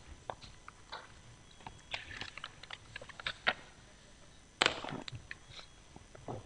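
Quiet scattered rustles and small clicks of papers and objects being handled on a meeting table, with one sharper, louder knock a little past two-thirds of the way through.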